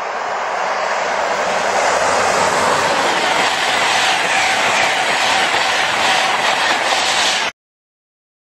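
Express passenger train passing close at speed: a loud, steady rushing noise that builds over the first couple of seconds and then cuts off suddenly near the end.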